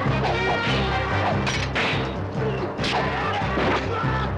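Sword-fight scene sound: dramatic fight music with a steady beat, cut through by sharp sword-strike and slash sound effects, about a second and a half, two and three seconds in.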